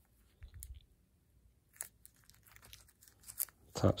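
Clear rigid plastic card holders clicking and rubbing against each other as they are shuffled in the hands: a few faint, scattered clicks and crackles.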